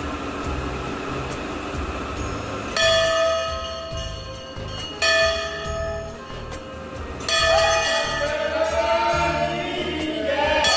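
Large hanging brass Hindu temple bell struck three times, about two seconds apart, each strike ringing on and fading. Under it plays devotional music with a steady low beat.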